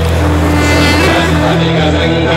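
Devotional soundtrack music: a steady low drone with chanting over it.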